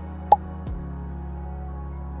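Background music with sustained low notes that shift about every two seconds. A single short, sharp click, the loudest sound, about a third of a second in.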